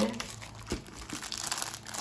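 A clear plastic sleeve crinkling as hands handle it and work it open, irregular crackles with a couple of soft knocks in the first half.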